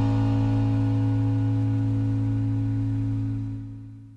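A garage punk band's final chord held and ringing out, a steady low note with the higher tones dying away; it fades out near the end.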